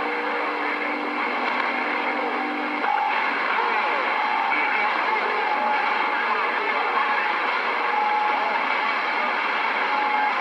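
CB radio receiver hissing with heavy band static through its speaker, with steady heterodyne whistles coming and going and faint, garbled voices of distant stations buried in the noise. The signal meter reads low, so only weak skip signals are getting through.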